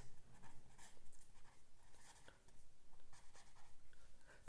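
A pen writing on a sheet of paper, making faint, irregular strokes as a couple of words are written out.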